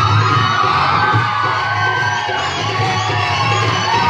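Rajasthani Kalbeliya folk dance music: a steady drum beat under a long high note that slides up and down, with an audience cheering.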